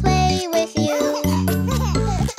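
Children's song backing music with a bouncy bass line and bright, tinkling melody notes.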